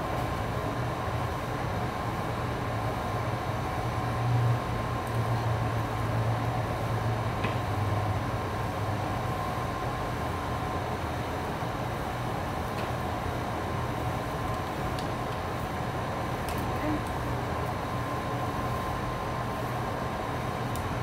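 Wall-mounted air conditioner running: a steady hum and rush of air.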